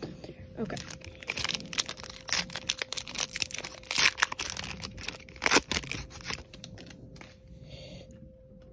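Foil trading-card pack wrapper being ripped open and crinkled by hand: a quick run of crackles and tearing sounds lasting about five seconds, then dying away.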